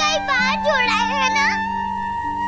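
A young girl crying and wailing, high-pitched and wavering, for about the first second and a half, over a background music score of soft held notes.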